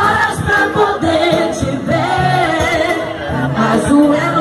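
Live band music with drums and guitars, and singing over it.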